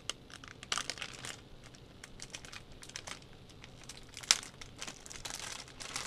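Crinkling and crackling of a metallic anti-static bag being opened and handled to take out a hard drive, with one sharper snap about four seconds in.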